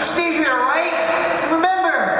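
A high-pitched voice making wordless sounds that swoop down and back up in pitch, then slide upward near the end.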